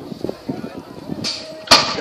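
BMX starting gate dropping: a single sharp bang near the end, over a low murmur of voices.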